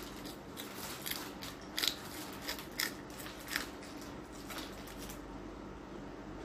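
Crisp crunches of teeth biting into and chewing a raw long green chili pepper: a series of sharp crunches that die away after about five seconds.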